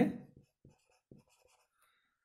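Marker pen writing on a whiteboard: faint, short strokes as a word is written out.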